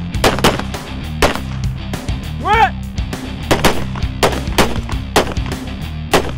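Handgun shots fired in an irregular string from several shooters, sometimes two or three close together, over background music with a steady low pulse and a swooping tone that rises and falls about halfway through.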